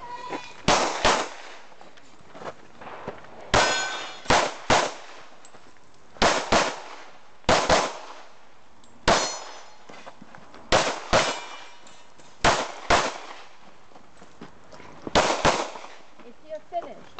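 Pistol shots fired mostly in quick pairs, each pair about half a second apart, with pauses of one to two seconds between the strings: a USPSA Limited-division course of fire, about sixteen shots in all.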